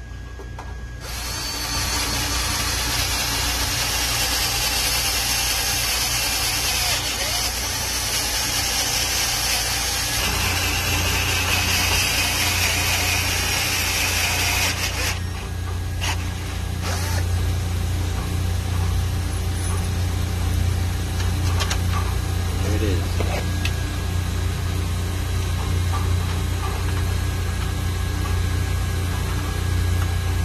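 Power drill with a step drill bit cutting a bolt hole through a steel motor mounting rail, running for about fourteen seconds and then stopping. A steady low machinery hum continues underneath.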